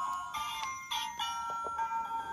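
Music box playing a chiming melody, one held note after another, while its lid is open.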